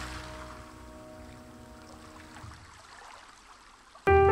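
The last held chord of a jazz track dying away over a faint wash of ocean-wave noise, the whole sound growing steadily quieter.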